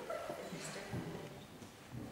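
Soft, low human voices with a short breathy, laugh-like burst early on.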